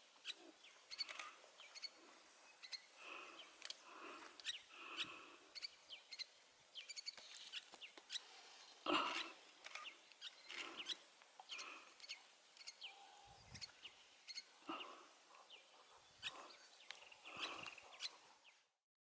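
Young meerkats calling softly: a string of many short chirps and peeps with a few lower call notes, one louder call about nine seconds in.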